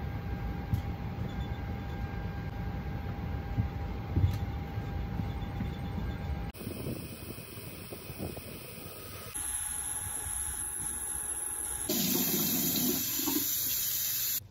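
Steady rushing noise of an airliner cabin's air system with a faint steady hum. About 6.5, 9.5 and 12 s in it cuts abruptly to other steady noise beds, the last one louder.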